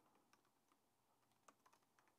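Faint computer keyboard keystrokes: a handful of scattered, short clicks over near silence.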